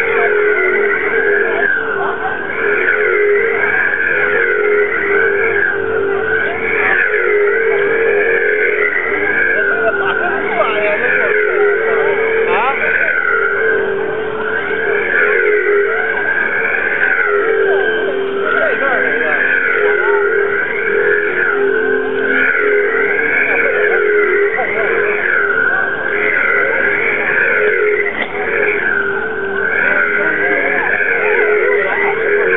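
A spinning one-sided Chinese yoyo (kongzhu) whistling, with a high two-note whistle that swoops up and down every two to three seconds as the spin speed rises and falls on the string. Beneath it runs a steady, pulsing lower hum.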